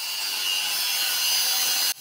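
Handheld angle grinder cutting through a metal bar: a steady, high grinding whine that stops abruptly just before the end.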